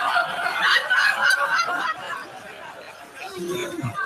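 Audience laughing, many voices at once, dying down after about two seconds, with a single voice near the end.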